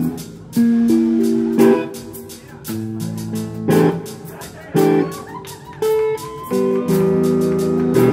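Live rock band playing an instrumental passage of a rock ballad: guitar chords ring out and change about once a second, with a sharp hit marking each change.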